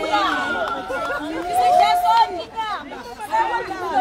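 Several people's voices talking and calling out over one another, the lively chatter of a small group.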